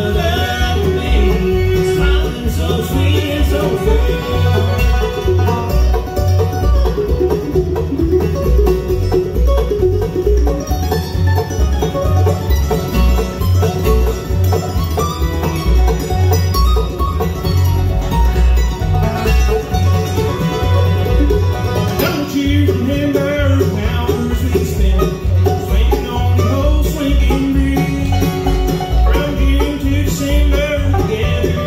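Bluegrass band music, with banjo and guitar over a steady, even bass beat.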